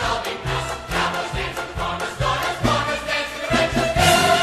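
Orchestral music from a stage-musical cast recording, in a stretch with no sung words: a steady bass beat of about two notes a second under busy rhythmic accompaniment.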